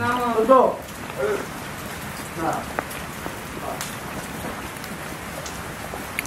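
Steady hissing background noise with faint scattered ticks, under a brief voice at the start.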